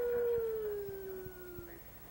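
A person's voice holding one long, drawn-out howl-like call, part of a peekaboo game, that slides slowly down in pitch and stops near the end.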